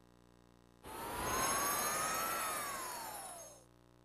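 DVD menu transition sound effect: a whoosh with a whistling tone that rises and then falls, topped by a sparkly high shimmer, starting about a second in and fading out after about three seconds.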